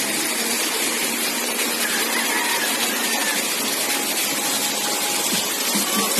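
Steady rushing of flowing water in a natural rock pool, a constant even hiss with no strokes or splashes standing out.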